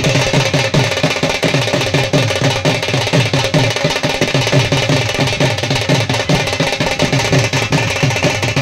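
Steady, fast drumming: low drum strokes, each dropping in pitch, about three a second, over a constant hiss.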